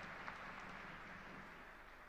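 Faint applause from the audience, fading away.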